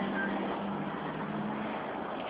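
Steady low hum of a motor vehicle engine over a noisy background, with one short high chirp just after the start.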